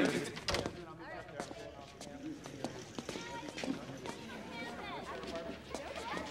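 Faint background chatter of several voices, with a few light clicks and knocks in the first couple of seconds.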